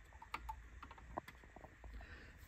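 A few faint, irregular clicks from plastic push-button plungers being pressed down on the circuit board of an opened electronic toy.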